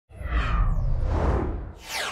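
Logo-intro whoosh sound effect: a rushing swoosh over a deep low rumble that swells in at once, then a second, falling swish near the end.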